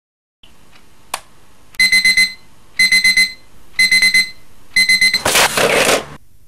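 Electronic alarm clock beeping, in bursts of four quick high beeps repeated about once a second. Near the end a loud rush of noise covers it.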